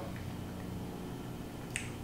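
Quiet room tone with a steady low hum, and one faint short click near the end.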